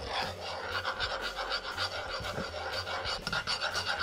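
A metal spoon scraping round an aluminium saucepan in quick repeated strokes, stirring a thick, bubbling butter and brown sugar mixture.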